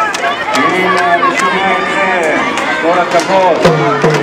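Crowd of young girls' voices talking and calling over one another, with irregular sharp clacks of plastic hand castanets several times a second.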